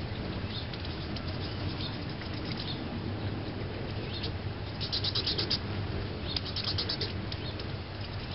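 Hummingbirds' wings humming steadily as they hover and feed at a nectar feeder, with two quick runs of rapid high chipping calls about five seconds in and again a second and a half later.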